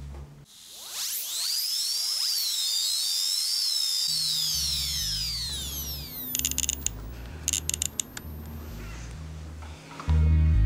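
Muffled, bass-heavy music thumps as if through a wall. It cuts out for about three seconds while an eerie swirl of high, weaving, falling whistle-like tones over a hiss rises and fades. Then the bass returns, with a few quick bursts of rattling clicks.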